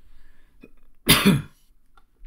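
A person's single cough, about a second in, lasting about half a second.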